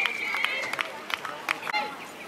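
A referee's whistle blown once in a single steady blast lasting just under a second, over shouting voices and a few scattered sharp clicks.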